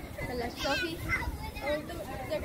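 People talking, with a high-pitched child's voice standing out about half a second in, over a steady low rumble.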